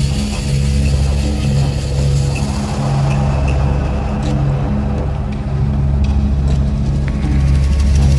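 Slow shamanic meditation music built on held low drone notes that shift every second or two, over a steady high hiss-like layer with a few soft clicks.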